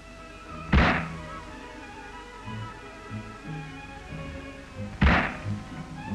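Two loud sudden bangs about four seconds apart over background music: a .22 rifle firing by accident as its butt strikes a hard object, its hammer fall not blocked by the safety catch.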